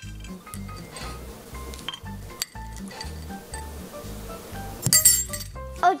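Metal spoon clinking against a small glass bowl while scooping chocolate chips: a few separate clinks, then a louder cluster about five seconds in. Background music with a steady beat runs underneath.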